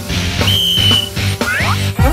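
A single high whistle blast, held steady for about half a second, over background music with a steady beat; a few quick rising cartoon swoops follow near the end.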